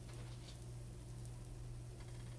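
Pancakes frying quietly in a nonstick pan: a faint, even sizzle with a few light ticks, over a steady low hum.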